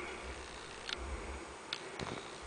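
Two faint, short clicks about a second apart over low background noise and a little low rumble.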